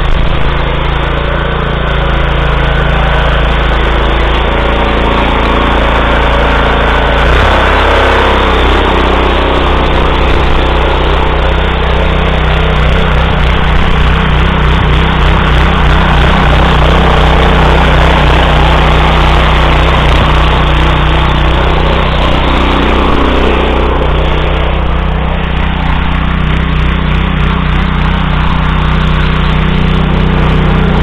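Walk-behind tractor's single-cylinder Lifan petrol engine running steadily under load while goose-foot tiller rotors churn wet soil. The engine note shifts about seven seconds in.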